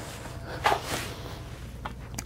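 Light handling sounds of a pistol being picked up and set into a foam-lined metal lockbox: a sharp click about two-thirds of a second in, a short rustling hiss, and another small click near the end.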